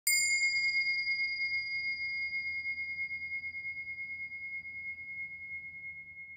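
A single struck bell rings out: a bright ding whose high overtones die away within about a second. It leaves a clear ringing tone that fades slowly, wavering slightly in loudness.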